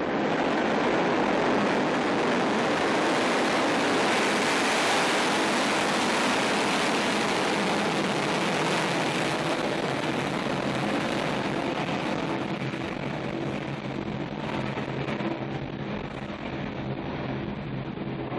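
Soyuz ST-B rocket's kerosene-oxygen first-stage engines (RD-108A core and four RD-107A boosters) at liftoff: a dense, steady rush of engine noise that starts to fade about twelve seconds in as the rocket climbs away.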